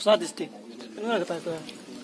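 Pigeons cooing in short phrases, heard under a man's quieter speech.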